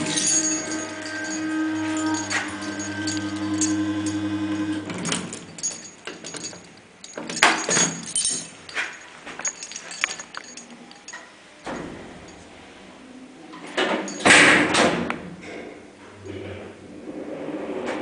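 Hinged doors of a 1951 Hütter freight elevator being opened and worked, with latch clicks and knocks and one loud bang about fourteen seconds in. During the first five seconds a steady electric hum with a buzz is heard; it cuts off suddenly, and a fainter hum returns near the end.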